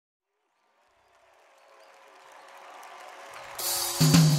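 Opening of a live gospel praise recording. Silence for about two seconds, then the band and crowd fade in under a held note, growing steadily louder, and jump up sharply just before the end as the full sound comes in.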